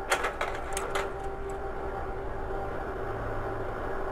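Kodak Carousel slide projector: a handful of quick mechanical clicks in the first second as the slide changes, over the steady hum of its running fan motor.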